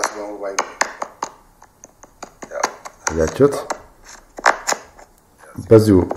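Irregular sharp clicks and light knocks, several a second at times, from hands handling the phone and its plugged-in microphone cable. A man's voice speaks briefly at the start, a little after halfway, and again near the end.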